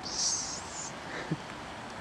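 Red-hot metal pipe hissing briefly as it lands on damp grass, the sizzle fading within the first second. A faint low knock follows about halfway through.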